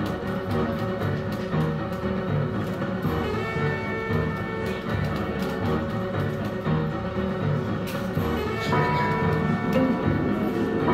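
Wolverton slot machine playing its free-spin bonus music: sustained notes over a repeating low beat. New higher notes come in near the end.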